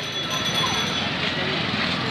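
Busy market ambience: a steady hum of distant chatter mixed with traffic noise, with a few faint voices.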